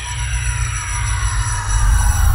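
Cinematic logo-intro sound design: a deep bass rumble that swells in loudness, under a cluster of tones gliding slowly downward in pitch.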